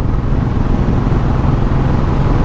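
2013 Royal Enfield Classic 500's air-cooled single-cylinder engine running steadily at cruising speed, heard from the rider's seat under a steady rush of wind and road noise.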